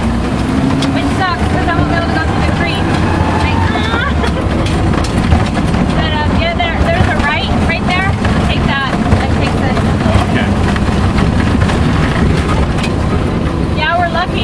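Open tour vehicle driving along a bumpy dirt track: a steady engine and road rumble with frequent jolts and rattles from the rough surface.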